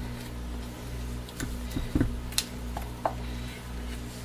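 A handful of soft knocks and scrapes from a silicone spatula scooping thick, accelerated soap batter out of a plastic pitcher into a loaf mold, over a steady low hum.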